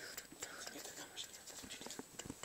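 Faint whispering, with a few small clicks.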